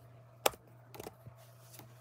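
One sharp click about half a second in, then a few faint ticks, from a hand working a computer's mouse or keys. A steady low hum runs underneath.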